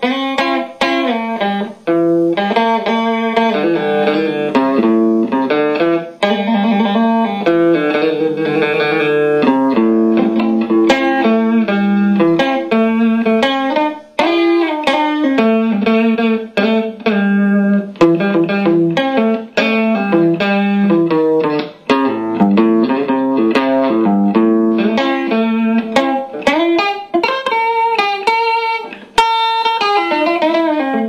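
Electric guitar, a 1974 Fender Stratocaster, played through a restored 1952 Webster 166-1 valve amplifier driving a new Weber Signature 10A alnico speaker. Picked single-note lines and chords run with a few brief pauses between phrases.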